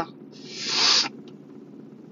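A short breathy hiss of air close to the phone's microphone, like a breath let out through the nose, swelling and then stopping after about a second. A low steady hum runs underneath.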